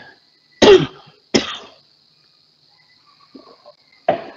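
A person coughing twice in quick succession, the first cough the louder, about a second in, over a faint steady high hiss.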